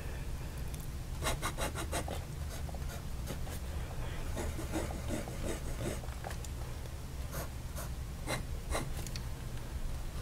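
Fountain pen with a bent fude nib scratching across paper: a quick run of short strokes about a second in, then slower looping marks and a few more separate strokes near the end. A faint steady low hum lies underneath.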